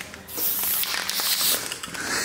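Aerosol can of temporary hair-colour spray hissing as it is sprayed, starting just after the beginning and stopping shortly before the end, about a second and a half long.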